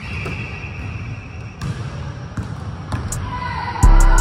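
A basketball being passed, caught and shot on a gym court, with a few sharp knocks of the ball over a steady low rumble. Music with a heavy bass drum starts near the end.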